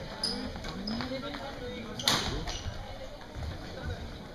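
Badminton rackets striking the shuttlecock and shoes squeaking on the sports-hall floor, a few sharp hits with the loudest about two seconds in, echoing in the large hall. Voices chatter underneath.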